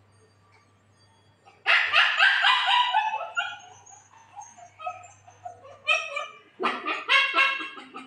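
A dog barking and yelping in high-pitched calls: a sudden long run starting about two seconds in, then more short yaps in the last two seconds.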